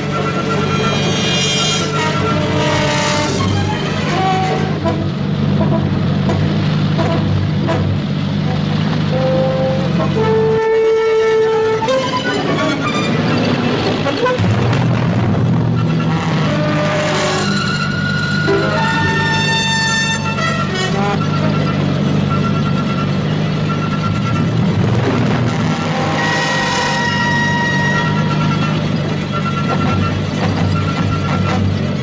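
A jeep engine running steadily on the move, under a dramatic orchestral score with held brass-like chords. The engine drone drops out for a few seconds a little before the middle.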